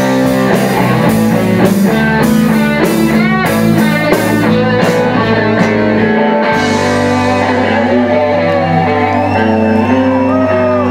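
Live rock band playing loud, with distorted electric guitars, bass and drum kit. About six seconds in the drums stop and the guitars ring on in held chords with bending notes, as the song ends.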